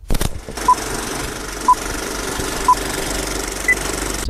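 Old-film intro sound effect: a steady, noisy, projector-like clatter with three short beeps about a second apart and a higher-pitched fourth beep near the end, like a film countdown leader.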